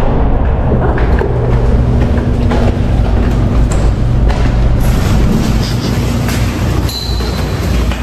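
Footsteps climbing concrete stairs: irregular knocks and scuffs over a loud, steady low rumble.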